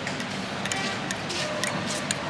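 A metal teaspoon stirring sugar into a glass of mint tea, clinking lightly against the glass about five times at an uneven pace.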